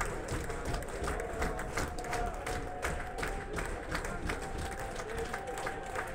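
Concert audience applauding between songs, with scattered clapping, crowd voices and a steady held tone from the stage.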